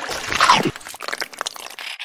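Close-miked ASMR eating sound effect: a loud bite and crunch about half a second in, followed by a run of small crackling crunches as the prey is chewed.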